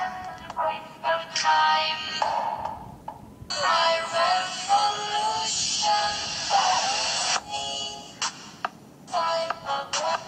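Electronic dance music playing, with a pitched synth melody over a beat. It drops back briefly about three seconds in and thins out again near the end.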